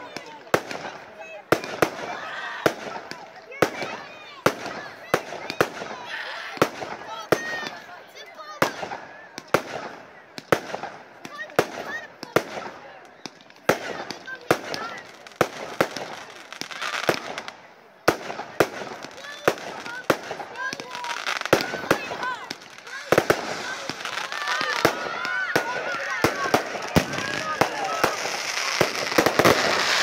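Display fireworks going off in a steady run of sharp bangs, about one to two a second, with people's voices underneath. From about three-quarters of the way through, the bangs come thicker and the sound grows louder.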